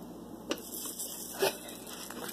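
Spatula tapping against a non-stick frying pan twice, about a second apart, with a faint background hiss from the pan.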